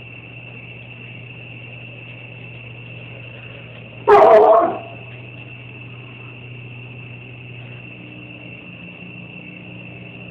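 A pet dog gives one short, loud yelp about four seconds in. Under it runs a steady low hum and a thin high whine.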